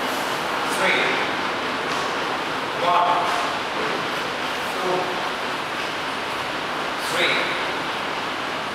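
Short single-word voice calls about every two seconds, four in all, in the rhythm of counting out taiji movements, over a steady hiss.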